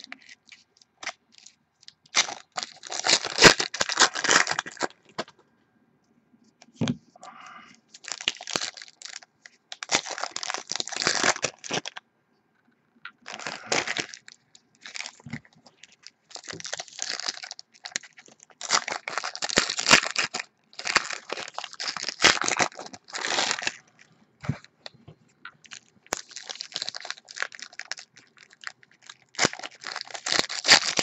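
Foil baseball card packs being torn open and their wrappers crinkled, with cards handled in between. It comes as a run of rustling, tearing bursts a second or two long, separated by short pauses.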